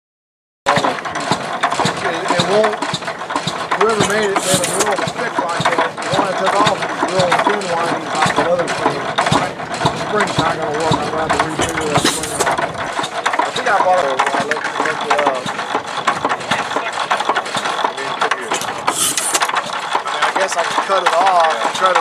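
Single-cylinder Economy 4 HP hit-and-miss gas engine running, cutting in abruptly under a second in, with people talking nearby over it.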